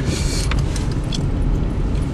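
Low steady rumble of a manual-transmission Volkswagen car, heard inside the cabin as it is parked at low speed. There is a short hiss at the start and a single click about half a second in.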